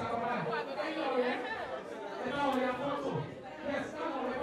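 Chatter of several voices talking at once, with no single speaker clear.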